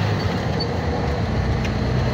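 Truck's diesel engine pulling up a dirt hill, a steady low drone heard from inside the cab.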